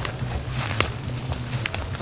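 Footsteps through dry brush and grass, with a few sharp snaps and crackles, over a steady low rumble. A brief high whistle falls in pitch about half a second in.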